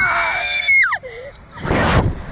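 A thrill-ride rider screaming: one long high scream that drops in pitch and breaks off about a second in, then a loud rush of noise near the end.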